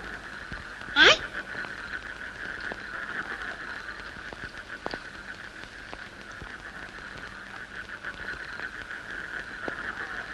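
Steady night-time chorus of frogs, a continuous high trilling drone. About a second in, a short voice call rises and falls in pitch.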